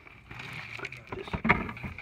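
Loose rock rubble scraping and clinking as a hand pulls it out of a crystal pocket in the rock, with a few sharp knocks in the second half.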